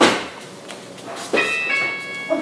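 A sharp knock, then about a second later several steady high electronic tones, like a tune, that hold on.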